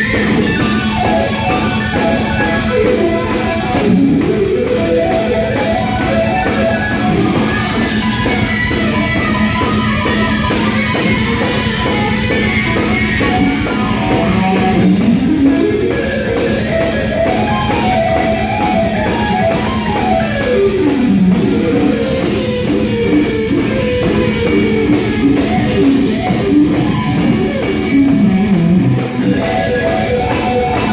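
Electric guitar played live: melodic runs that climb and fall in pitch over a steady held low note.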